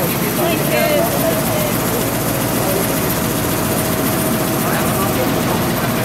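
An engine running steadily, with traffic noise and faint voices.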